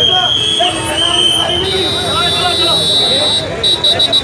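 Electronic alarm sounding over crowd voices. It gives a steady high-pitched beep with short breaks, then switches about halfway to a harsher buzzing tone, and near the end to rapid pulsed beeps, several a second.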